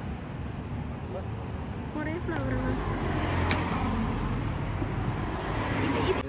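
Steady low rumble of road traffic that swells a little in the middle, as if a vehicle is passing, with faint voices briefly in the background.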